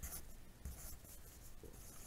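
Faint scratching of a wooden pencil writing numbers on lined notebook paper, in short separate strokes.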